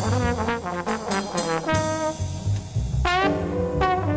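Small modern jazz band playing live: a brass horn solo line of shifting notes, with a quick upward glide about three seconds in, over bass and drums.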